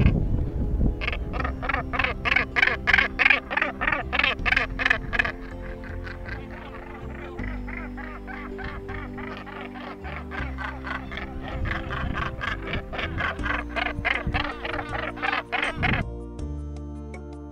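Northern gannets calling at their nesting colony: rapid runs of harsh, repeated calls, loudest in the first few seconds and again near the end, over soft background music.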